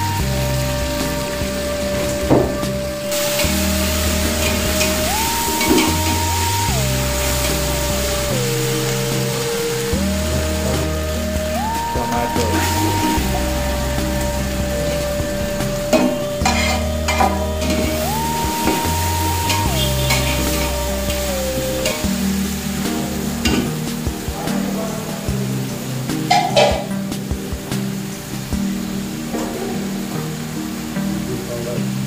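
Onions and chopped tomatoes sizzling in hot oil in a large aluminium pot, stirred with a slotted plastic spatula that knocks and scrapes against the pot a few times.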